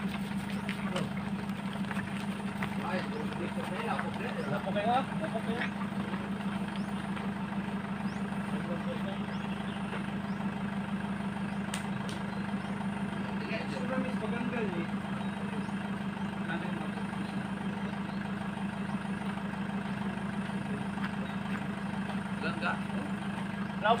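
A van's engine idling with a steady low hum, under faint scattered voices.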